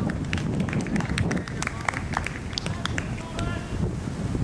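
Outdoor football-pitch sound: a low, uneven rumble of wind on the camera microphone, with distant shouting voices and a run of short, sharp knocks.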